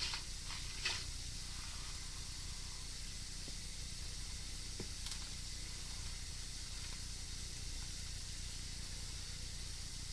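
Steady hiss with a low hum underneath, and a few faint clicks in the first second.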